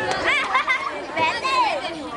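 Voices talking and chattering, several people at once.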